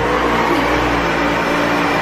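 Vacuum cleaner running at full power: a loud, steady whooshing hiss with a constant motor hum under it.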